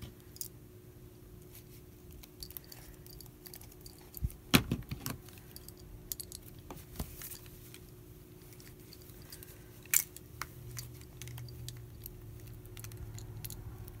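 Small clicks, knocks and rattles of paint tubes and their caps being handled while someone tries to open lids that are stuck, with a sharp knock about four and a half seconds in and another near ten seconds.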